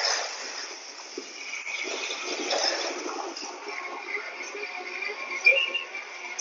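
Ride-through recording of the Great Movie Ride's Alien scene: the ride vehicle running through the set amid a steady hiss of effects and machinery noise, with a short sharp sound near the end.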